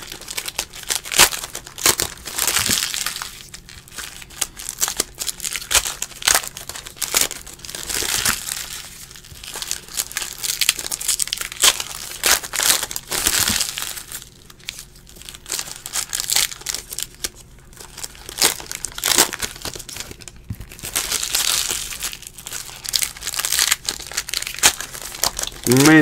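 Foil wrappers of Panini trading card packs being torn open and crinkled by hand: a long run of irregular crackling rustles and tears, with a couple of quieter stretches in the middle.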